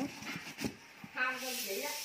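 A few faint clicks, then a person's voice speaking briefly in the second half.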